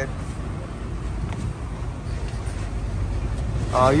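A motor vehicle running, a steady low engine and road rumble.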